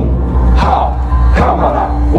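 Devotional chanting over a low steady drone, with short phrases repeating over and over in a steady rhythm.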